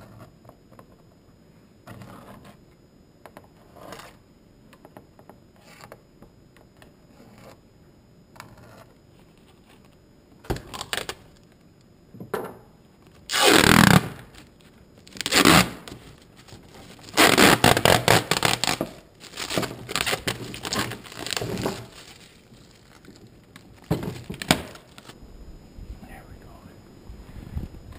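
A thin clear plastic sheet being handled and bent by hand: a quiet stretch of small clicks and taps, then from about ten seconds in a run of loud, noisy scraping bursts, the longest lasting about two seconds.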